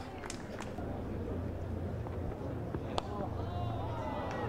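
Field-microphone ambience of a near-empty cricket ground: a steady low rumble with a few faint clicks, and some faint high chirping near the end.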